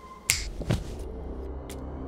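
Two sharp snap-like hits about half a second apart, the first crisp and bright, the second lower and duller. Then low, sustained music tones start.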